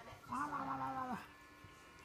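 A small dog gives one drawn-out whine of about a second, held on one pitch and dropping at the end.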